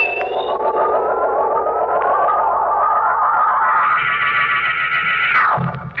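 Dramatic organ music bridge between radio-drama scenes: a wavering, sustained chord that climbs steadily in pitch, swelling around two-thirds of the way through, then sliding down and cutting off just before the end.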